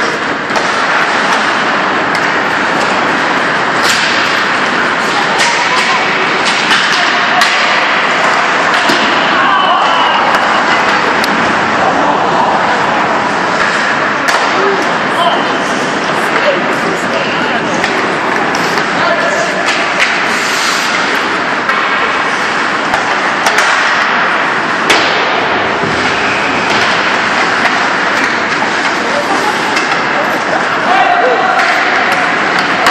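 Ice hockey game noise in an indoor rink: a steady din of spectators' voices and shouts, with frequent sharp knocks and thuds from sticks, puck and boards.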